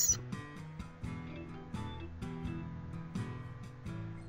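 Quiet background music, a tune of plucked notes.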